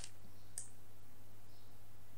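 Two light clicks of a computer mouse, a sharper one at the start and a fainter one about half a second in, over a low steady hum.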